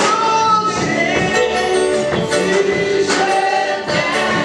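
Gospel worship song sung by a choir with instrumental accompaniment and tambourine-like percussion, held sung notes over a steady beat.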